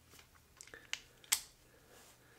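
Faint handling of a small toy car chassis as it is lifted out of a plastic axle alignment jig: a few light clicks of plastic and metal parts, the sharpest a little past the middle.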